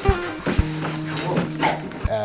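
A dog whining excitedly in short rising and falling cries, over acoustic guitar music.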